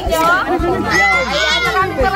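Several people talking at once, with high-pitched children's voices among them.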